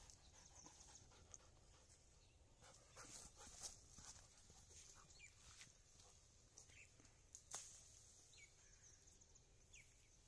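Near silence: a dog panting faintly and moving through grass, with scattered faint rustles and a few faint short chirps.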